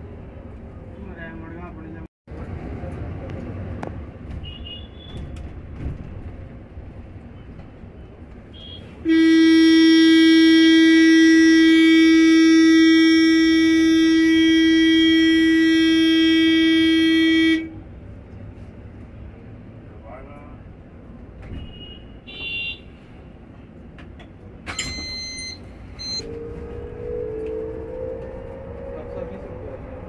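A vehicle horn, loud and close, held on one steady note for about eight and a half seconds starting about nine seconds in, over the low rumble of the bus cabin.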